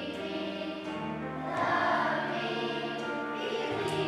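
Children's choir singing together in long held notes, swelling louder about halfway through.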